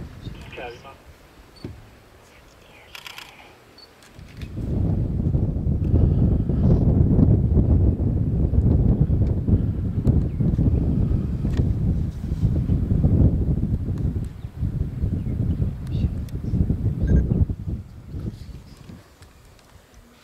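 Wind buffeting the microphone: a low, gusty rumble that starts about four seconds in and dies away near the end, after a quieter start with a few faint clicks.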